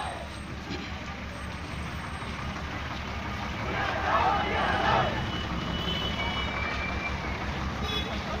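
Engine of a water tanker truck running close by at low speed, a steady low throb, with voices of people walking alongside coming up about four seconds in.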